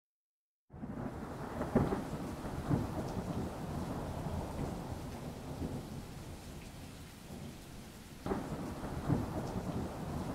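Steady rain with rolls of thunder, starting under a second in; the strongest rolls come about two seconds in and again near the end.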